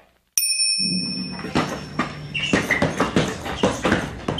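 Soundtrack of an old home-video recording: a click, then a steady high-pitched whine with a low hum that fades out after about two seconds, under a run of irregular sharp knocks and clicks.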